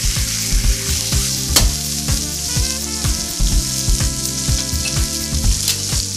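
Pork frying in a pan of hot oil with a steady sizzle, while metal tongs turn the meat. Steady low tones and a soft thump about once a second run underneath.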